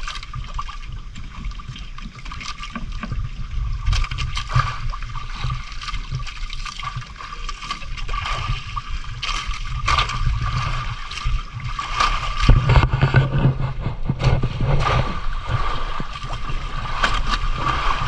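Sea water slapping and sloshing against the hull and outriggers of a small boat, in irregular splashes, with wind rumbling on the microphone, strongest about two-thirds of the way through. A faint steady high hum runs underneath.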